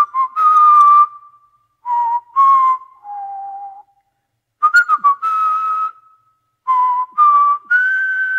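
Man whistling a slow tune through pursed lips: several short held notes in phrases with pauses between, the last note higher and held longest near the end.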